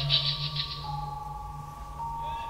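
Live electronic music from synthesizers. A pulsing high texture fades out under a second in, leaving a steady low drone and two sustained tones.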